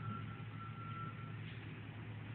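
A faint high electronic beep at one steady pitch, sounding twice back to back and stopping before halfway, over a low steady hum.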